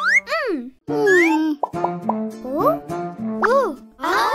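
Cartoon soundtrack: light children's background music with comic sound effects, several swooping slides up and down in pitch and short pops.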